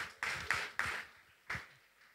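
A few people clapping, sparse and uneven: about four claps in the first second and a last one about a second and a half in, then the clapping stops.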